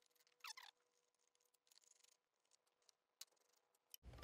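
Near silence, with a faint short squeak about half a second in and a faint click a little after three seconds.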